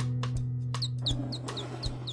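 Cartoon underscore: a held low note with light, evenly spaced plucked beats. About a second in, a run of short, high, falling chirps comes in, about four a second, like small bird tweets.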